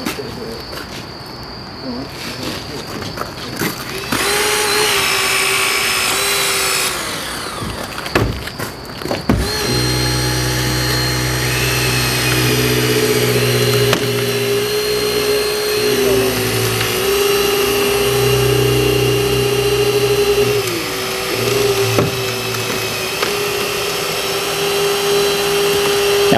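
Battery-powered hydraulic rescue cutters cutting through a car's roof pillars and roof: a loud noisy stretch about four to seven seconds in and a couple of sharp cracks, then a steady motor whine from about ten seconds on that sags slightly now and then as the blades bite.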